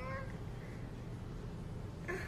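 A hungry toddler's short whining vocal sound, fading out just after the start, then quiet room tone with a low hum.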